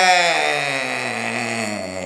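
A man's single long, drawn-out laughing cry, one unbroken voice sliding steadily down in pitch.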